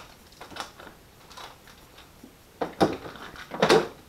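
Sticky tape pulled off its roll and torn in a few short rips, the loudest two pairs coming in the second half.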